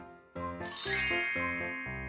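A bright chime sound effect with a rising sparkle about half a second in, ringing on and fading slowly over light children's background music.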